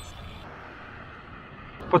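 Steady road noise from a road bike being ridden: tyres rolling on asphalt with wind. A faint high-pitched tone stops about half a second in.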